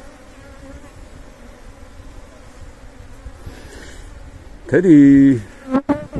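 A swarm of Asian honeybees (Apis cerana) clustered on a tree branch, buzzing as a low, steady hum.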